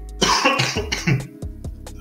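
A short cough from the narrator about a quarter second in, followed by a couple of weaker rasps, over quiet background music.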